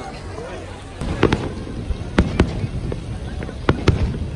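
Aerial fireworks shells bursting: after about a second, a string of sharp bangs comes in close pairs, about three pairs, over a low rumble.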